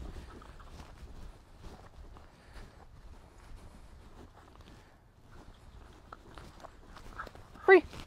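Faint footsteps and rustling on a grass lawn as a handler walks with a dog heeling close beside him.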